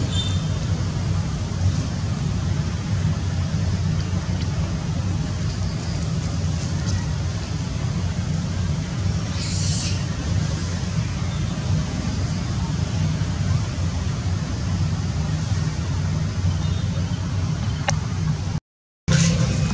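Steady low rumble throughout, with one brief high chirp about nine and a half seconds in.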